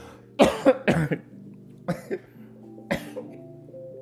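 A man coughing, set off by a bite of raw onion: a quick run of about four coughs, then two single coughs spaced out after it. Soft background music plays underneath.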